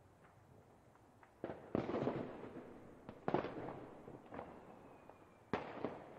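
New Year's Eve fireworks and firecrackers going off: sharp bangs about a second and a half in, just after three seconds in and near the end, with smaller pops between, each followed by a decaying crackle.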